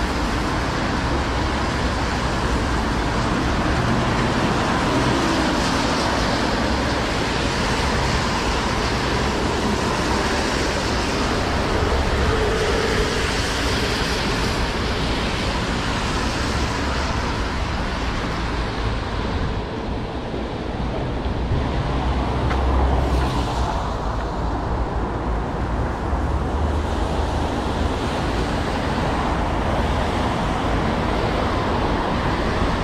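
City road traffic on a wet street: a steady hiss of tyres on the rain-soaked road with rain falling. A passing vehicle's low rumble swells and is loudest about three-quarters of the way through.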